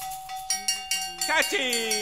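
Free-jazz big band with group vocals: a held note, then percussion strikes from about half a second in, a shouted vocal cry near the middle, and falling sliding tones after it.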